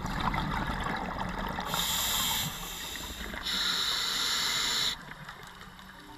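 Underwater sound of a scuba diver breathing through an open-circuit regulator: crackling, gurgling exhaust bubbles, then two separate high hisses of inhalation, each about a second long and cutting off sharply.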